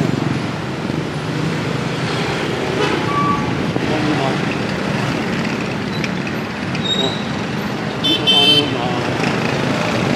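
Busy street traffic, with motorcycles and tricycles running past. A short, high-pitched horn beep sounds about eight seconds in.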